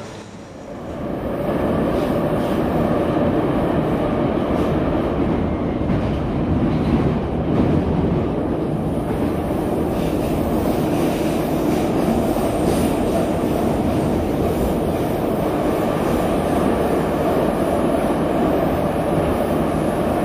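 Moscow Metro train running, heard from inside the carriage: a steady, loud rumble of wheels and running gear. It swells up about a second in and then holds level.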